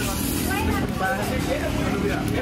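Indistinct voices talking nearby over a steady low background rumble.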